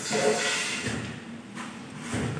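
Rustling handling noise that fades away over about the first second.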